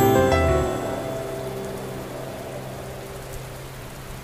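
The last notes of a soft music intro die away in the first second, leaving a recorded rain sound effect: a steady, even hiss of falling rain that slowly fades.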